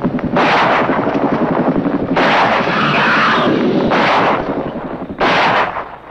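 Film-soundtrack gunshots from a long gun: about four loud blasts one to two seconds apart, each with a long echoing tail, over a low rumbling background.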